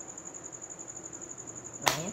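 A single sharp click near the end as the wooden pulley is pushed onto the metal bicycle hub axle, wood knocking against metal. Under it runs a steady, high, fast-pulsing tone.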